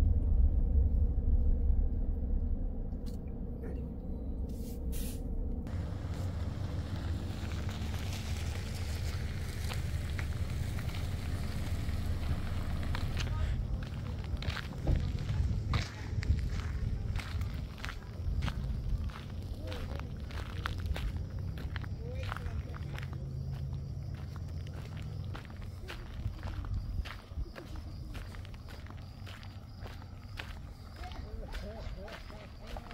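Car rolling slowly along a gravel road, a low rumble heard from inside the cabin. It gives way to footsteps on gravel at a steady walking pace, about two steps a second.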